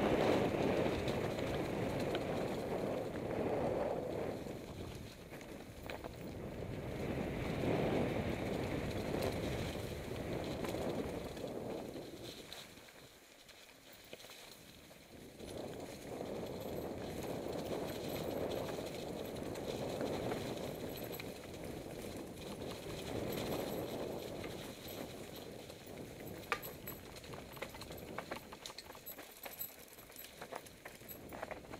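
Mountain bike riding downhill over a trail of dry leaves and stones: tyres rolling and rattling through the leaf litter with a rushing noise that swells and fades every few seconds. It goes quieter for a moment partway through, and there are sharper clicks and knocks from the bike in the last few seconds.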